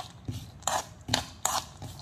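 Spatula scraping across a kadai and stirring sliced almonds and cashews roasting in it, in short strokes about two a second, the nut slivers rattling against the pan.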